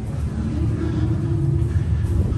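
Steady low rumble, with a faint hum joining about half a second in.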